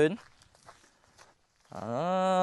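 A few faint footsteps through dry grass and weeds in a short gap between a man's words, with talking again near the end.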